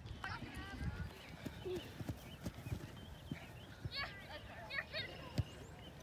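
Faint, distant shouts and calls from players and spectators on an open soccer field, with scattered soft thumps from the play.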